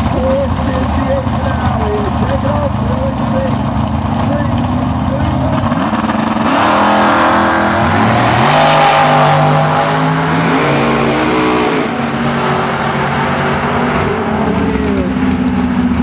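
Drag racing cars, a blue door car and a dragster, on a run down the strip at full throttle. Engines rev up through rising, bending pitches as they accelerate, loudest in the middle, then ease off as they pull away.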